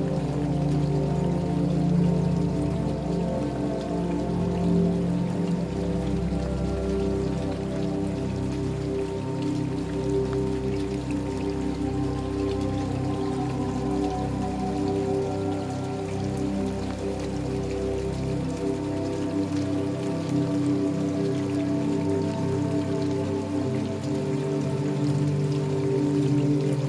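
Calm new-age music of slow, sustained held tones playing over steady rainfall with scattered individual drops. The deep bass note fades out about three-quarters of the way through.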